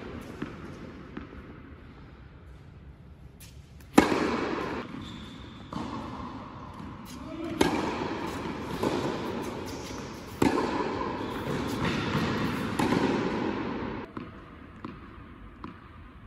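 Tennis balls struck by rackets in a rally in an indoor tennis hall, each hit a sharp pop followed by a long echo off the hall. The first and loudest hit comes about four seconds in, then more hits follow about two seconds apart until a couple of seconds before the end.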